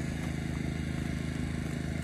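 A generator's engine running steadily, a low even hum.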